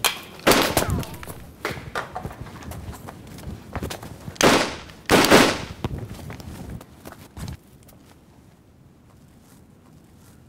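Pistol shots, as film sound effects: a few sharp bangs with echoing tails near the start and two loud ones about halfway through. Smaller clicks and knocks of quick footsteps come between them.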